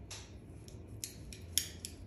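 Faint handling of a section of hair being combed out with a tail comb, with a few small sharp clicks from the comb and flat iron about a second in and again near the end.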